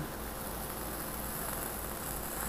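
Steady hiss with a low hum underneath: the background noise of a cheap lavalier microphone turned up high.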